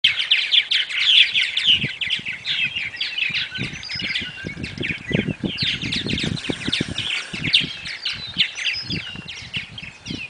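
A colony of purple martins calling: many overlapping, rapid chirps and chattering calls at once, with scattered low thumps and rumbles underneath.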